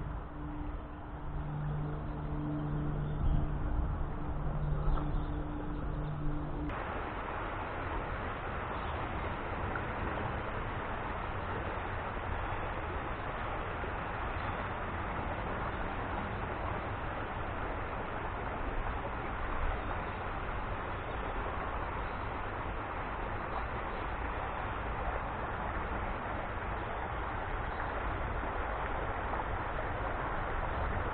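A low, steady two-tone hum with a rumble, breaking in places, stops abruptly about seven seconds in. After that comes the steady rush of a small river running over a shallow riffle.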